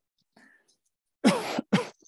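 A man coughing twice in quick succession, the first cough longer than the second.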